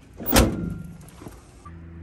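A single sharp knock about half a second in, with a short ringing tail: a hand slapping the front bodywork of a BMW E30 shell.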